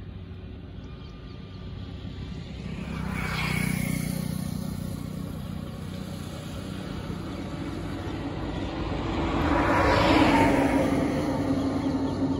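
Two road vehicles passing one after another, each rising and then fading. The first peaks about three and a half seconds in, and the second, louder one about ten seconds in.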